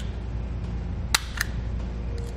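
Wire stripper clamping and stripping the insulation off a thin trailer-brake wire: two sharp clicks about a quarter second apart, a little past the middle.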